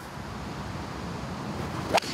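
Golf tee shot heard on the golfer's own body microphone: a low, wind-like noise of the swing builds up, then one sharp crack of the club head striking the ball just before the end.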